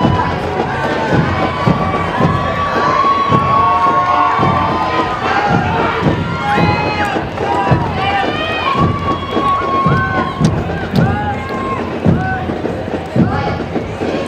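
Crowd of spectators cheering, whooping and shouting, many voices overlapping, with repeated low thumps underneath.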